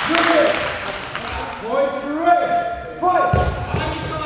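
Indistinct voices calling out, echoing in a large sports hall, with low thumps near the end.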